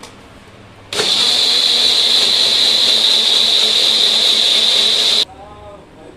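Small electric mixer grinder running steadily for about four seconds, a loud motor noise with a high whine, as it grinds boiled tomato-onion masala into a fine paste. It starts abruptly about a second in and cuts off suddenly near the end.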